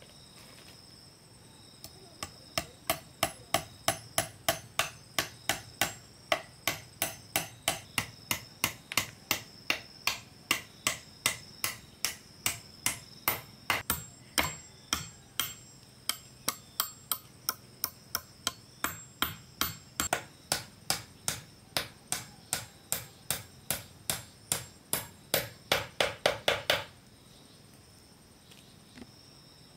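Hammer driving nails into a thick round slice of log, steady blows about two to three a second, quickening into a fast run just before they stop near the end. Insects chirr steadily behind.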